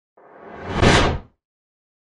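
Whoosh sound effect that swells for about a second and then cuts off abruptly.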